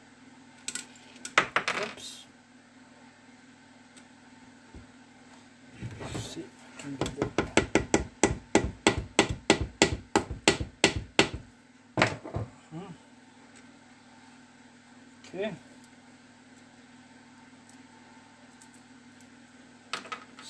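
Hammer blows on a part fitted to the shaft inside a Zündapp KS600 gearbox's aluminium casing: a quick, even run of about twenty blows lasting some four seconds, starting about seven seconds in. A few single knocks and clatters of tools on the bench come before and after the run.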